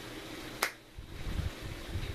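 A single sharp click a little past halfway through, followed by uneven low rumbling noise.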